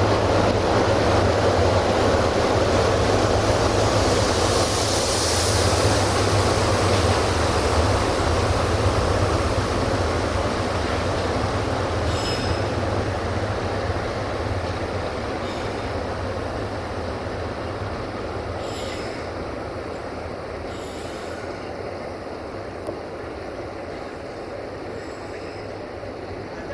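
Passenger coaches of a departing diesel-hauled train rolling along the station track: steady wheel and running noise with a low rumble. It fades gradually as the train draws away.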